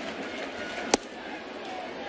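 Steady ballpark crowd murmur with one sharp pop of a pitched changeup into the catcher's mitt, about a second in: a strike.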